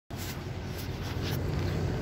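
Outdoor city street noise: a steady low rumble, with three faint ticks about half a second apart.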